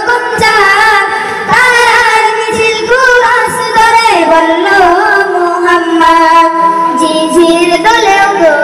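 A group of boys singing a song together in unison into microphones, one long wavering melody line carried through a loudspeaker system.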